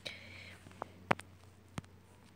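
A faint breathy whisper, then three sharp clicks, the middle one the loudest.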